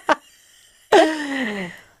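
A woman's single drawn-out wordless vocal sound, falling in pitch, starting about a second in after a short pause.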